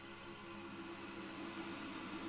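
Low, steady droning from a film's opening soundtrack played through a television's speakers, slowly getting louder.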